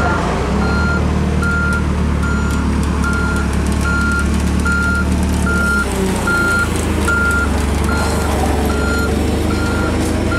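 Komatsu forklift's reversing alarm beeping steadily, about one beep every 0.8 seconds, over the steady drone of its running engine.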